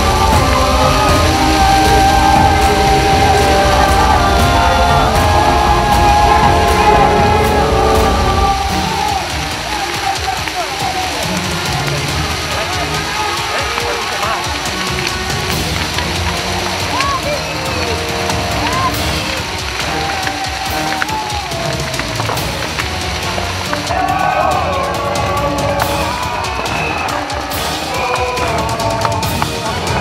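Background music with sustained tones, loudest for about the first eight seconds, then dropping to a quieter, noisier mix with voices in it.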